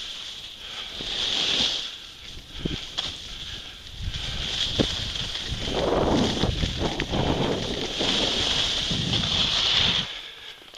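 Skis carving down a groomed slope: the hiss of the edges on the snow swells and fades with each turn, with wind rumbling on the microphone, strongest in the second half.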